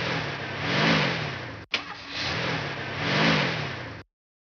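Car engine sound effect played twice back to back: each time a click, then the engine starting and revving up and back down. It cuts off suddenly at the end.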